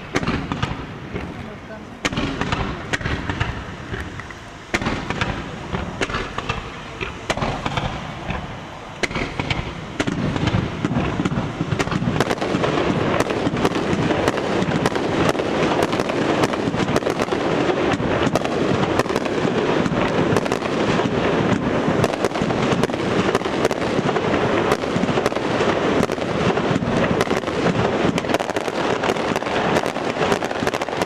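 Fireworks display: separate bangs every two or three seconds at first, then from about ten seconds in a dense, continuous barrage of crackling bursts.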